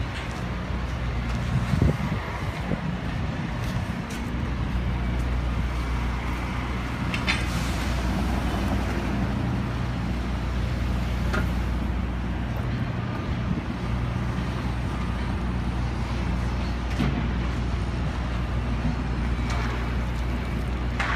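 Steady low hum and road noise of a moving motor vehicle, with a brief louder bump about two seconds in.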